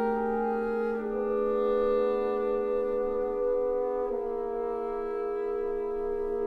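Orchestral film score: slow, sustained brass chords led by French horns, the harmony shifting about a second in and again about four seconds in.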